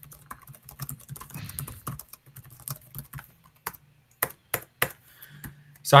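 Computer keyboard typing: irregular keystrokes, with a few sharper ones about four seconds in.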